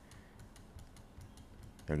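Faint, irregular clicking of a computer keyboard, a few light key taps scattered over a low room hiss.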